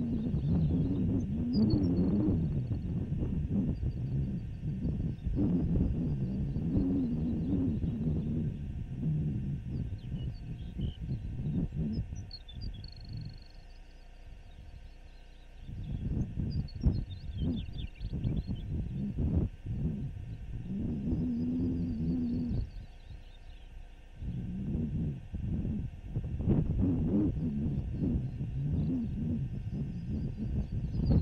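Wind buffeting the microphone in gusts: a low rumble that swells and eases, dropping back briefly about halfway through and again later. Faint high chirping squeaks sound above it.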